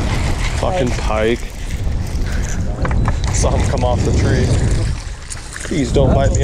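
Wind buffeting the camera microphone, giving a heavy low rumble, with short wordless vocal exclamations about a second in, around four seconds in and again near the end.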